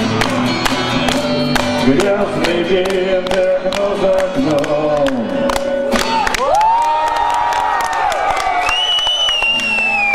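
Electric guitar strummed in a steady rhythm that stops about six seconds in, as a song ends. The crowd then cheers, with shouts and a long high whistle that falls away near the end.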